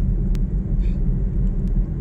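Steady low rumble with no speech, and a faint click about a third of a second in.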